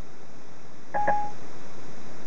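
A short electronic beep from the Ford Sync hands-free system through the car's speakers: one tone lasting about a third of a second, starting with a click about a second in, over a steady hiss. It comes as Siri takes in a spoken command.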